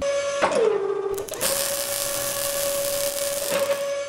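Mechanical sound effect for an animated logo: a steady motor whine that dips in pitch about half a second in, with a loud hiss of machine noise over the middle two seconds.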